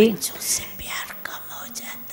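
A voice speaking very softly, close to a whisper, into a microphone: breathy, hissing speech sounds with almost no voiced tone.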